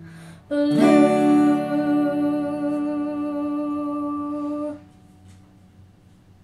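Final chord of a song on a capoed cutaway acoustic guitar, strummed about half a second in. A girl's sung closing note is held over it, and both stop together just before five seconds.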